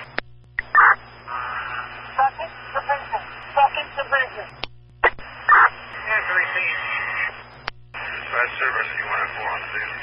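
Fire department two-way radio traffic on a scanner: three short voice transmissions in a row, each ending with a sharp click and a brief dropout as the channel unkeys, over a steady low hum.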